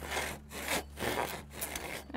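A length of ribbed steel rebar pushed back and forth inside a hollow bamboo pole, scraping out the node dividers. It makes repeated rasping strokes, about two a second, as the rebar's serrated edges wear the node out inside.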